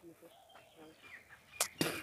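Knife cutting down through a watermelon onto a steel plate, two sharp clicks near the end, over faint bird chirps.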